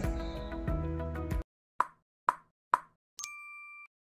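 Background music stops abruptly about a second and a half in. Three quick plops follow, about half a second apart, and then a short, bright two-tone chime: a logo sting sound effect.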